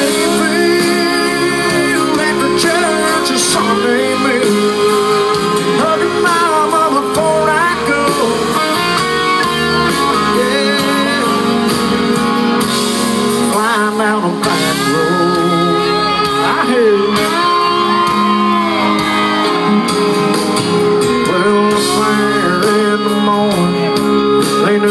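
A live country band playing through a loud outdoor stage PA, with amplified male singing over acoustic guitar, electric guitar and drums.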